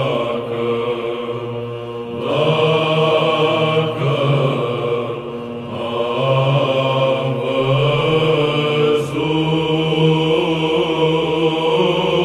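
Byzantine chant: a men's psaltic choir singing a calophonic heirmos in the third mode, a long melismatic line on drawn-out vowels over a held ison drone. The drone shifts about nine seconds in.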